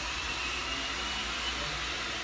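A steady rushing hiss with a faint high whine that holds a steady pitch and fades about one and a half seconds in.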